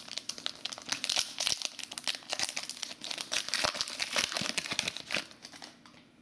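A trading card pack's wrapper crinkling and crackling as hands tear it open. The dense run of crackles fades out about five seconds in.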